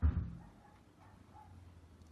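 A dull low thump at the start, then a dog barking faintly over a low steady hum. The barking is taken as a sign that someone has come in.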